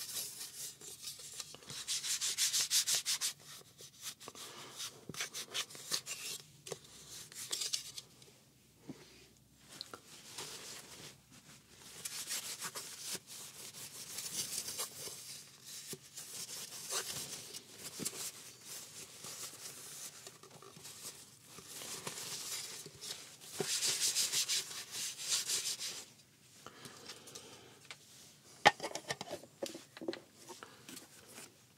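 Rubbing and wiping on the inside of a black plastic camera cover, in several spells of quick, scratchy strokes with quieter handling between them. There is a single sharp click near the end.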